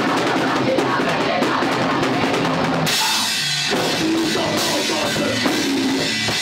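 Metalcore band playing: fast drumming under electric guitars and screamed vocals. About three seconds in, the cymbals open into a bright crash wash.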